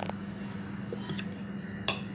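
A few light clicks and clinks as the lid is taken off a steel mixer-grinder jar, the sharpest near the end, over a low steady hum.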